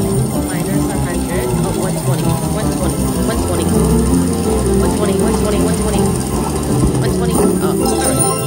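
Slot machine bonus music and chiming win effects from a Lock It Link: Piggy Bankin' game while the piggy-bank coin award counts up, with voices mixed in.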